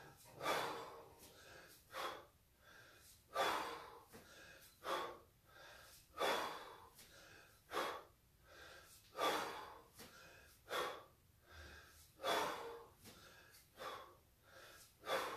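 A man breathing hard and in rhythm during kettlebell snatches: a sharp, forced breath about every one and a half seconds, every other one louder, two breaths to each rep at 20 reps a minute.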